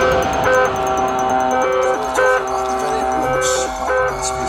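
Psychedelic progressive trance from a DJ set: a melodic synth line of short stepped notes repeats, with fast hi-hat ticks that fade out over the first second. The low end is thinner than just before, as in a breakdown.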